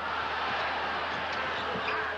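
Arena crowd noise, a steady roar from the stands during live basketball play, heard through an old TV broadcast.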